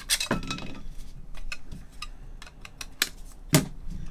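Light clicks, taps and clinks of gloved hands handling trading cards, plastic card holders and packaging on a table, with louder knocks just after the start and about three and a half seconds in.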